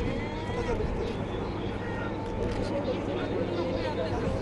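Scattered voices of people talking over a steady low outdoor rumble.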